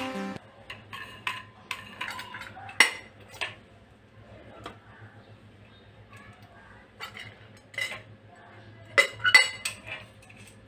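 Small metal clinks and taps as wall-lamp parts are handled: the metal arm, backplate and threaded fittings knock together, sharpest about three seconds in and again twice near the end.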